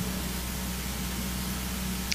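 Steady hiss with a low, constant electrical hum: the background noise of the audio line in a pause between spoken phrases.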